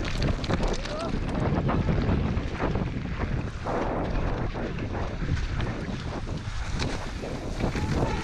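Wind rushing over the microphone of a mountain bike rider's point-of-view camera during a fast downhill run, with the tyres on a rough, muddy trail and the bike clattering in quick, irregular knocks.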